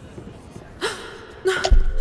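A woman's sharp gasp about a second in. Just before the end, music comes in with a deep bass note and held tones.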